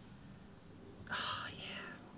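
A short breathy sniff about a second in, as a person smells an opened tub of face and body scrub held up to the nose.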